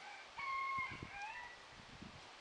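A rooster crowing once, starting about half a second in and lasting about a second, in two steady-pitched parts.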